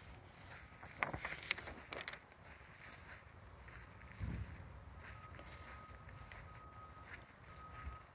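Quiet outdoor ambience dominated by wind rumbling on a phone's microphone, with a few soft clicks in the first two seconds and a dull thump about four seconds in. A faint, thin, steady high tone runs through the last three seconds.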